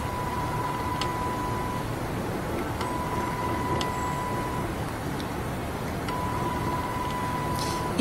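HIFU machine giving a steady high beep three times, each lasting under two seconds, as the handpiece fires a line of ultrasound shots, over steady background noise.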